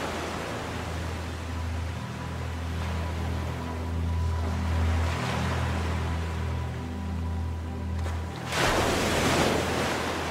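Ambient relaxation music of sustained low synth notes that change every few seconds, mixed with the sound of ocean waves washing in as slow swells of hiss. The loudest wave swells up near the end.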